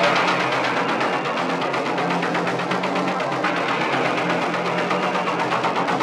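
Dark electronic dance music in a DJ mix, EBM / industrial techno: a fast, steady ticking rhythm over sustained low synth tones, with the deep bass left out.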